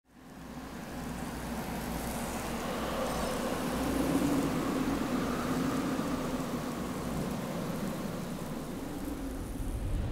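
A steady, rumbling wash of ambient noise that fades in at the start and swells around the middle, with no clear beat or pitch.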